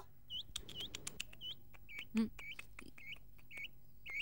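Small birds chirping, faint: short repeated chirps, several a second. A brief low sound comes about two seconds in.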